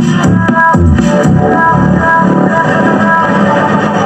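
Guitar-led music played loud through a SOCL 506 amplifier driver board into a speaker, a listening test of the freshly built amp.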